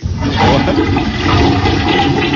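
Toilet-flush sound effect, starting suddenly and rushing on steadily: the gag that sends the round's worst to the 'troninho', the toilet throne.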